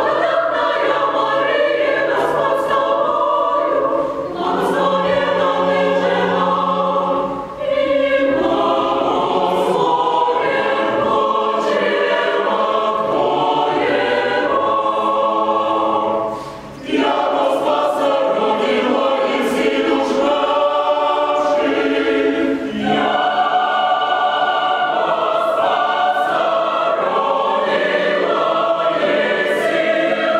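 Mixed choir of women's and men's voices singing in harmony, phrase after phrase, with short breaks between phrases; the clearest break comes about 17 seconds in.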